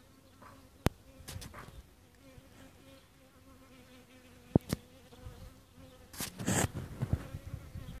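A flying insect buzzing with a faint steady hum, broken by a few sharp clicks, one about a second in and two close together midway, and a louder noisy burst near the end.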